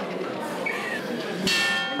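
A bell-like chime rings out once, suddenly, about one and a half seconds in and keeps ringing, over a low murmur of indoor background chatter.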